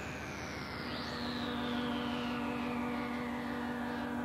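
Korg synthesizer playing an electronic passage: slow falling sweeps of hissing noise, a short rising sweep, and a steady low drone that comes in about a second in.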